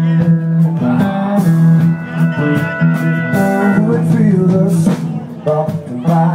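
Live band playing an instrumental stretch of a song: acoustic guitars strummed in a steady rhythm, with held melody notes over them.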